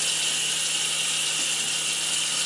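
Kitchen tap running steadily into a stainless steel sink while soapy hands are scrubbed under the stream, a constant hiss of water with a faint low hum underneath.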